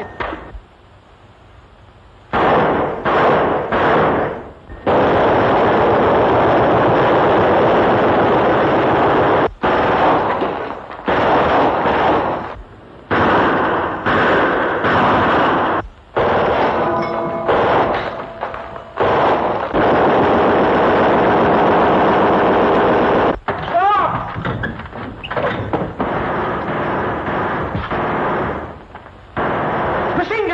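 Machine-gun fire in long sustained bursts, several seconds each with short breaks between. It starts about two seconds in, after a brief quiet.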